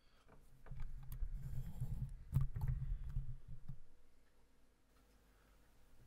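Handling noise from a microphone being turned on its stand: low rumbling and rubbing with scattered clicks, the sharpest a little over two seconds in, dying away about four seconds in.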